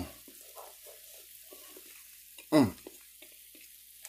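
Metal spoon stirring cooked dirty rice in a nonstick skillet: faint, irregular soft scraping and clicks. About two and a half seconds in, a short hummed "mm" of approval.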